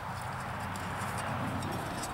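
Light, scattered clicks of metal camp-grill parts being handled, over a steady hiss and a low hum.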